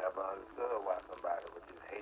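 A person's voice talking in short phrases.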